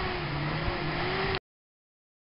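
A four-wheel drive's motor running with a steady low hum, wavering slightly in pitch, as the vehicle is winched. The sound cuts off abruptly about one and a half seconds in.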